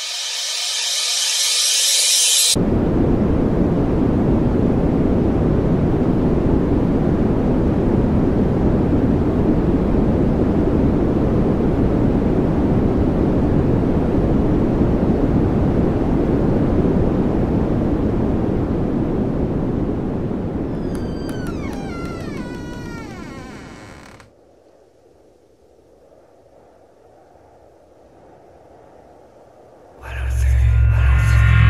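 A loud, steady rumbling noise that starts suddenly about two seconds in, after a short bright hiss. It fades away over the last several seconds with a few falling whistle-like tones, leaving a faint low hum.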